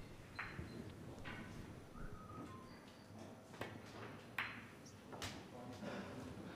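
Quiet hall tone broken by about five short, sharp clicks spread through, each ringing briefly.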